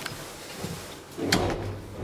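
An elevator's manual swing landing door being unlatched and pulled open, with a sharp latch click a little past halfway through.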